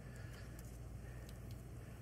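Breaded rice balls deep-frying in hot oil: a faint, steady sizzle with a few small pops.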